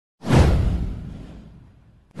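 A single whoosh sound effect from an animated intro: a sudden swish with a deep low rumble under it, sliding down in pitch and fading away over about a second and a half.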